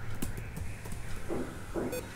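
Computer keyboard typing: a string of irregular key clicks and duller key knocks over a low steady hum.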